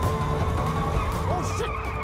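Tense film score with long held tones, laid over the low rumble of a car being driven hard in a chase scene.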